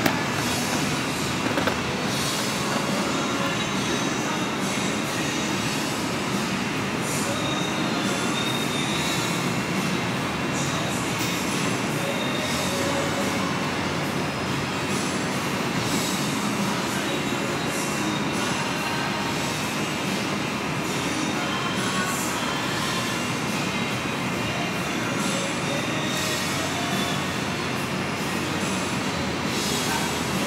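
Steady, even rushing room noise with faint high whines over it and no speech.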